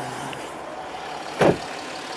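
Steady running of a Range Rover Sport's 3.0 TDV6 diesel V6 at idle, with one loud thump about a second and a half in as the car's door is shut.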